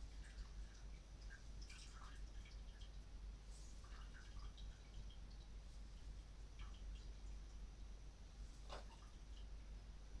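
Faint scattered drips and small ticks of a boiled liquid being squeezed through a cheesecloth into a pot, over a low steady hum.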